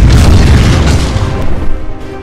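A loud cinematic boom sound effect, laid over music. It strikes suddenly with a deep low end and dies away over nearly two seconds.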